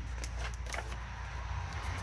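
Steady low background rumble with a faint papery rustle as a picture-book page is turned.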